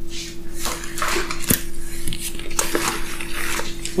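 Small plastic and metal hand tools clicking and clattering as they are handled and pulled from a nylon tool bag pocket, with brief rustling, over a faint steady hum.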